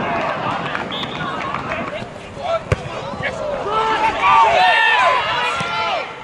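Players and spectators shouting over one another during open play, with a single sharp thud of a football being kicked a little under halfway through; the shouting is loudest in the second half.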